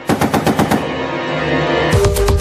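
Rapid burst of machine-gun fire as a sound effect, a quick run of sharp cracks through the first second or so, over loud music holding a sustained chord.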